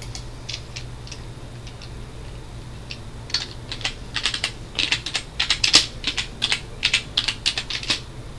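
Computer keyboard being typed on: a few scattered key presses, then a quick, dense run of keystrokes from about three seconds in. A low steady hum runs underneath.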